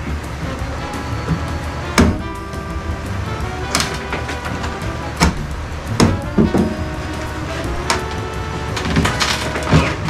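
Steady background music, with about six sharp wooden knocks spread through it as a steel pry bar works nailed-down plywood floor panels loose.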